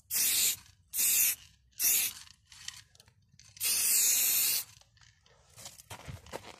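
Aerosol spray paint can hissing in bursts: three short sprays about a second apart, then a longer spray of about a second past the halfway point.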